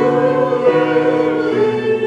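A choir singing sustained chords, the notes moving together about every half-second to a second.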